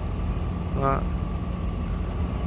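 Boat diesel engine running steadily: a low, even drone with a faint thin whine above it.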